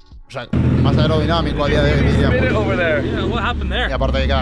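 Porsche 964's air-cooled flat-six heard from inside the cabin, a loud steady drone that comes in suddenly about half a second in, with a man's voice talking over it.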